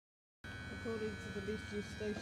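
Silence, then from about half a second in, the steady electrical whine and hum of a London Underground 1995 Stock train standing at the platform, its onboard equipment running, with a wavering lower tone over it.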